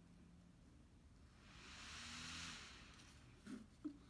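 Near silence, with a faint hiss that swells and fades in the middle.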